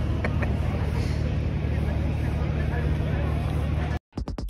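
Steady low outdoor background rumble at an even level, with a brief faint trace of voices about a quarter second in.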